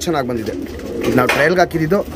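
Domestic pigeons cooing, a low steady burble under a man's speaking voice.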